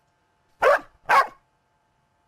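A dog barking twice, two short woofs about half a second apart.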